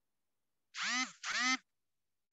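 A person's voice saying two short words in quick succession about a second in, heard through a video call.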